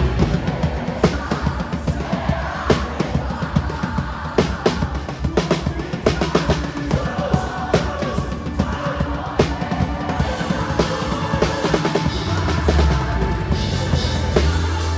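Drum kit played live with a full band, heard close from the drummer's seat: dense, rapid snare and tom strokes over bass drum, with a steady bass line and held keyboard tones underneath.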